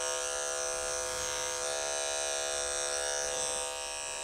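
Electric dog-grooming clipper fitted with a #30 blade, running steadily with an even hum as it trims matted fur from between a dog's paw pads.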